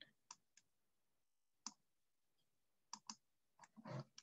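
Several brief, faint clicks of a computer mouse over near silence, as an on-screen eraser is selected and used, with two clicks close together about three seconds in.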